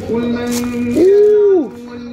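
A person's voice giving a long, drawn-out wordless exclamation in two held notes: a lower note for about a second, then a jump to a higher, louder note that slides down and stops.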